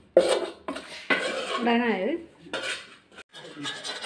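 A spoon scraping and clinking against an aluminium pan as powdered spice mix is stirred and scraped out, with repeated short strokes.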